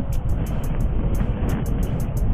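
Steady low vehicle rumble, with a light ticking beat of background music over it.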